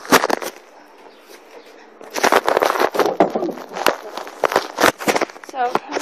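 A few sharp knocks, then about three seconds of dense crackling, rustling and clattering as things are handled and moved about in a horse stall.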